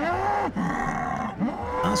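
A bull bellowing twice, two long calls about a second and a half apart, each rising and then falling in pitch.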